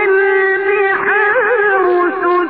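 A man's voice in melodic Qur'an recitation, holding one long drawn-out note, then ornamenting it with quick wavering turns about a second in and settling on another held note near the end. It is an old recording with a muffled, narrow sound.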